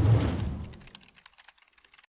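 A noisy whoosh-like swell peaks at the start and fades over about a second. It is followed by a run of faint quick clicks, like keyboard typing, that die away near the end. These are outro sound effects under animated on-screen text.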